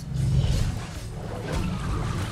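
Film soundtrack playing: a deep, continuous rumbling roar from the movie's underwater scene.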